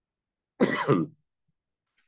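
One short throat-clearing cough from a man, about half a second long, starting about half a second in.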